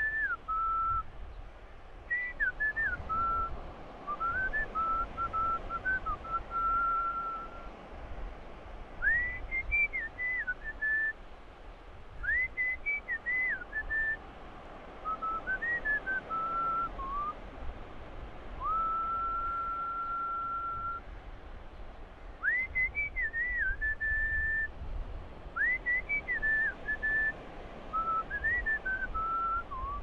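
A person whistling a tune in short phrases of gliding, pure notes, with one long held note about two-thirds of the way through, over a steady low rumble.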